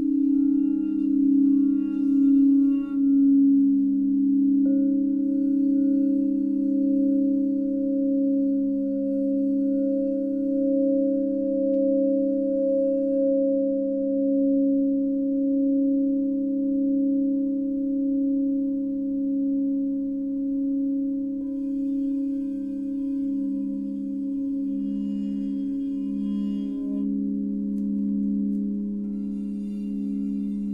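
Crystal singing bowls tuned to 432 Hz, played with a mallet and ringing together in a sustained drone of several low tones that pulse slowly as they beat against each other. A higher bowl joins about five seconds in, and another around twenty-two seconds in.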